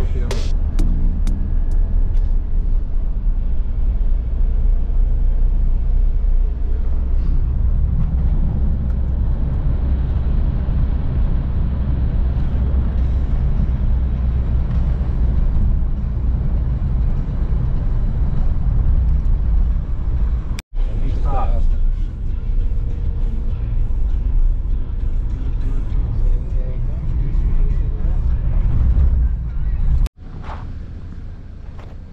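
Loud, steady low rumble of road and wind noise inside a moving car. It cuts out for an instant about two-thirds of the way through.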